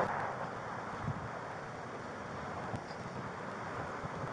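Steady outdoor background noise picked up by a body-worn camera microphone: wind on the mic and traffic hum, with a couple of faint knocks about a second in and near three seconds.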